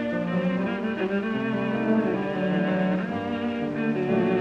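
A viola plays a sustained, singing melody with a wide vibrato over piano accompaniment. It is an early 78-era recording with little treble.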